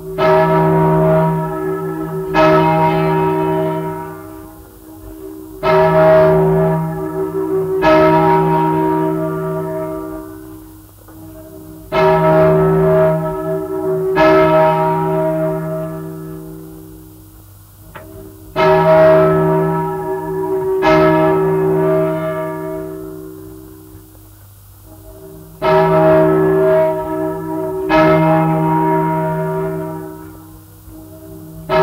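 A single large church bell, the 1155 kg O.L.V. Hemelvaart bell cast in 1871, struck in pairs of strokes about two seconds apart. Each pair rings out and fades before the next, about five times. The sound comes from an old 78 rpm disc recording with faint surface hiss.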